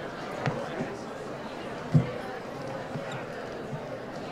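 Footsteps on hollow wooden stage steps and stage floor: a few irregular low footfalls, the loudest about halfway through, over a background murmur of voices.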